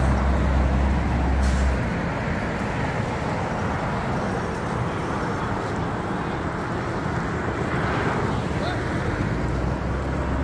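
Street traffic noise: a steady rush of passing vehicles, with a deep engine rumble for the first couple of seconds.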